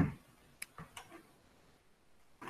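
Clicks from working a computer: one sharp click at the start, then three lighter ticks about half a second to a second in.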